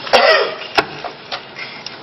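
A person coughing once, a short harsh burst, followed shortly by a sharp click and a few fainter clicks.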